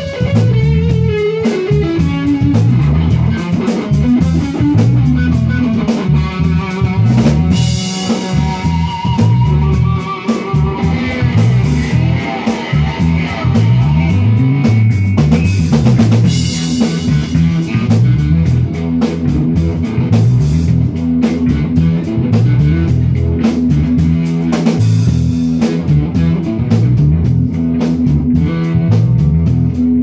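Live funk band playing an instrumental passage: a busy repeating electric bass line over a drum kit, with electric guitar on top.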